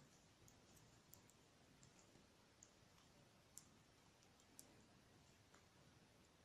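Near silence with faint, irregular clicks of metal knitting needles as stitches are worked along a row.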